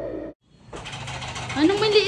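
The tail of a wavering background melody cuts off just after the start, followed by a brief silence. Then a steady rapid rattle sets in, and a high-pitched voice starts speaking about a second and a half in.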